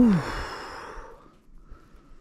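A man's long breathy sigh, "whew": a brief voiced note falling in pitch, then a rush of exhaled breath that trails off over about a second.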